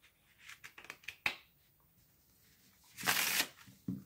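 A deck of Madison Dealers playing cards by Ellusionist being riffle-shuffled on a table. A few light card clicks come first, then a short, loud riffle about three seconds in.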